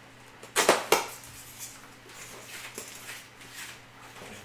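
Two sharp snaps about a third of a second apart as foam packing is pulled loose from the box, followed by faint rustling of the plastic wrapping.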